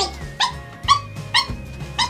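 Dog whining in short, high yips, about two a second, as it begs for a treat, over background music.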